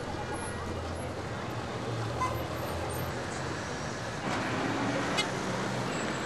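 Street traffic: a steady low vehicle engine hum over background street noise, getting louder from about four seconds in as a vehicle passes close by.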